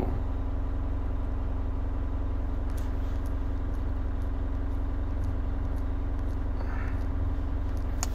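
A steady, unchanging low mechanical hum with a second held tone a little higher in pitch, and a few faint ticks about three seconds in.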